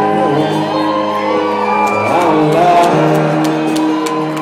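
A live country band playing a song with a sung vocal line over sustained chords, with the echo of a large concert hall. Shouts and whoops from the audience are mixed in.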